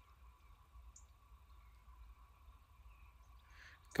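Near silence: a faint, steady background hum with no clear sound event.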